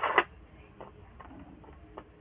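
Metal probe tips of an LED tester scraping and tapping on an SMD LED board: a short scratchy rub at the start, then a few faint clicks. A faint high-pitched pulsing repeats about six times a second in the background.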